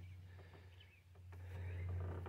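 Low steady hum with a faint click just over a second in.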